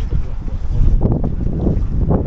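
Wind buffeting an action camera's microphone: a loud, uneven low rumble.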